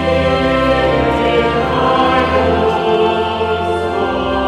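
Choir singing a hymn with organ accompaniment, steady and sustained.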